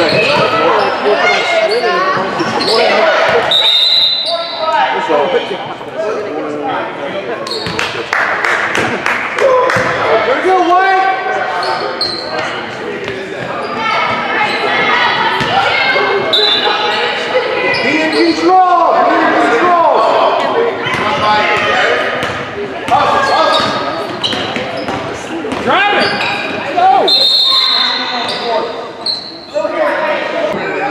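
Basketball game sound in a large echoing gym: the ball bouncing on the hardwood court and spectators' voices calling out, with a few short, high whistle tones.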